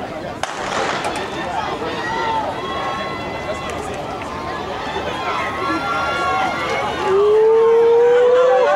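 A starting pistol fires once about half a second in, and spectators then shout and cheer the sprinters on. The cheering builds, ending in one loud, long, rising yell near the end.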